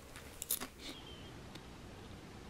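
Close-miked ASMR trigger sounds: a few short, crisp clicks and crackles in the first second, the loudest about half a second in, then only faint room hiss.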